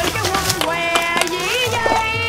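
Background music: a melody of held notes that slide from one pitch to the next, over a light beat.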